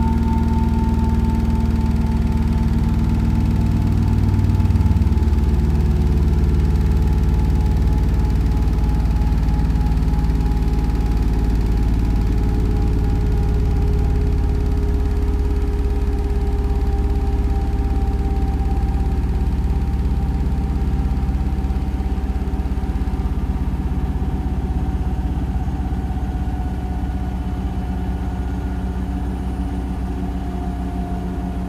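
Hotpoint NSWR843C washing machine spinning at high speed in its final spin: a deep rumble with a motor whine over it. The whine falls slowly in pitch and the sound grows a little quieter over the half-minute as the drum begins to slow.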